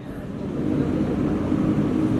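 A motor vehicle's engine running steadily: a low hum over a rushing noise, swelling a little at the start and then holding.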